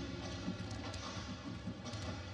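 Basketball being dribbled on a hardwood court: irregular low thuds, with short high sneaker squeaks and the general noise of an arena crowd.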